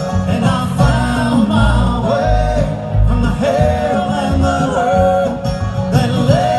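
Live bluegrass band playing, with banjo, upright bass and acoustic guitar under a lead line of long, sliding held notes.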